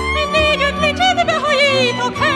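Background music: a melody with wide vibrato, operatic in style, over a sustained low accompaniment.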